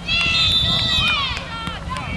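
A person's long, high-pitched shout from the sideline, held for about a second and falling off at the end.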